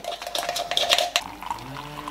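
A metal spoon clicking rapidly against a plastic cup as coffee, sugar and a little water are beaten together. Near the end, hot water is poured into the cup from an electric kettle, with a faint rising pitch as it fills.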